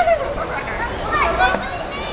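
Young children's voices calling out and chattering, with high, bending shouts about a second in, over a steady background of outdoor noise.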